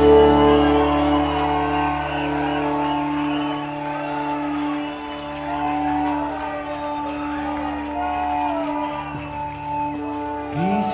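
A live rock band's last chord rings on through the guitar and keyboard amplifiers and slowly fades, the low end dropping out near the end, while the crowd cheers and whoops.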